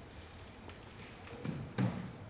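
A gymnast's running footsteps on a sports-hall floor, then two thuds near the end, the second and louder one about 1.8 s in, as he jumps off the floor onto a rolling gymnastics wheel (German wheel, Rhönrad) for a vault.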